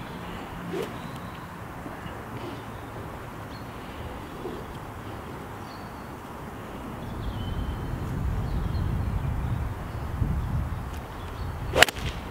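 Quiet open-air background with a few faint bird chirps, then near the end a single sharp crack of a golf club striking the ball on a full swing.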